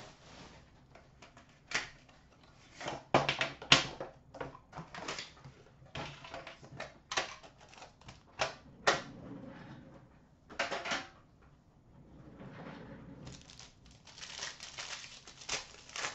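Irregular clicks, taps and scrapes of an Upper Deck Premier hockey card box being handled and opened by hand. Near the end comes longer rustling as the cards inside are taken out and handled.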